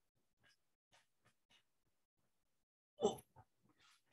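Near silence with a few faint clicks, then a person's short exclamation, "Oh," about three seconds in.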